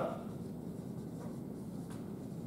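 Faint strokes of a dry-erase marker on a whiteboard over a steady low room noise.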